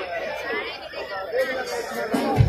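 Speech: a voice talking close by over the chatter of a crowd.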